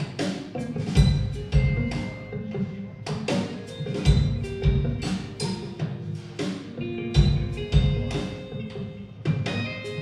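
A live band playing an instrumental passage: drum kit and percussion strikes over guitar and other sustained pitched notes.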